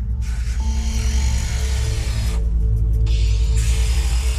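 Background music with a steady bass, over which a power tool cuts into a steel bar in two spells, stopping for a moment about two and a half seconds in.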